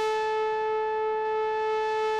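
Pioneer Toraiz AS-1 monophonic analog synthesizer playing a pad patch: one held note that slides up slightly into pitch as it begins, then sustains steadily.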